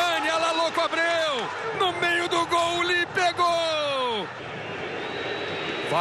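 A man's voice speaking in drawn-out phrases for about four seconds, then steady stadium crowd noise.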